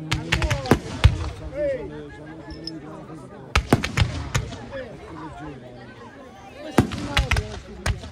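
Aerial fireworks display going off in three volleys of sharp bangs, each volley several reports in quick succession, roughly three seconds apart.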